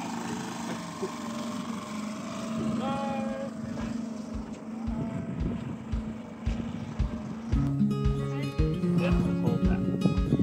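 Small outboard motor on an inflatable dinghy running steadily as the dinghy motors away, with a few faint calls of voices. About three-quarters of the way in, acoustic guitar music with a beat comes in.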